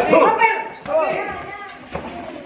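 Loud shouting voices from ringside during an amateur boxing bout, with a few short thuds of the clinch and gloved punches. The shouts come at the start and again about a second in, echoing in the gym hall.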